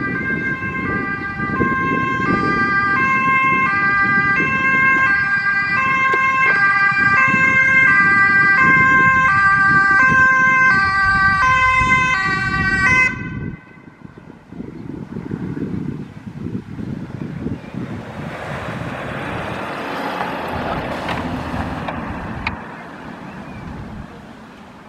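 Mercedes-Benz Sprinter ambulance running its two-tone siren, alternating between a high and a low pitch, loud and steady, until it cuts off suddenly about thirteen seconds in. After that only the van's engine and tyre noise is heard as it passes and drives away.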